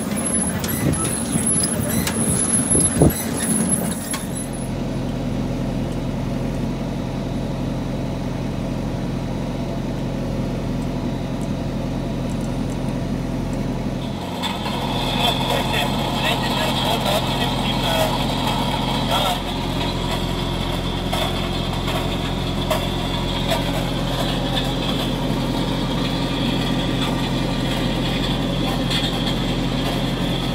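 Fendt 311 Vario tractor engine running at a steady, held engine speed while it pulls a potato harvester, together with the harvester's machinery. The first few seconds are buffeted by wind on the microphone. About fourteen seconds in, a higher, busier layer of machine noise joins the steady engine sound.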